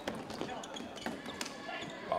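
Floorball play on an indoor court: a few sharp clicks of plastic sticks striking the hollow plastic ball and one another, with players' shoes on the sports floor, over the hall's low ambience.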